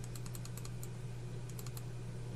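Computer mouse button clicking faintly, a handful of quick clicks near the start and another cluster about a second and a half in, as the font-size increase button is pressed repeatedly. A low steady hum runs underneath.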